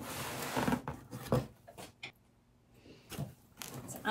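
Flaps of an old cardboard box being pulled open and handled: a scraping rustle at first, a few dull knocks, then a short pause and more light knocks near the end.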